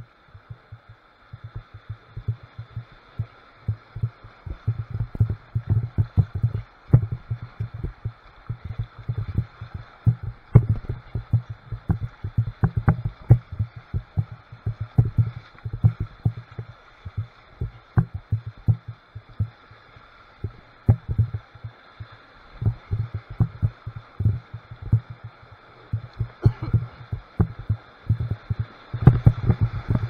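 Muffled, irregular low thumps and knocks from a kayak's hull and paddle in shallow, rocky rapids, with water slapping against the boat. The thumps come in quick clusters and get denser and louder near the end as the kayak enters whitewater.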